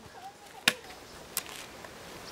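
Two sharp knocks, about 0.7 s apart, over a quiet background.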